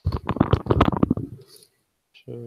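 Handling noise from an over-ear headset being pulled on: a rapid run of rubbing and knocking lasting about a second and a half, then dying away.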